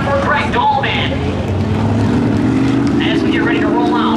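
An engine running with a steady low rumble, its pitch slowly rising over the last couple of seconds. People's voices talk over it now and then.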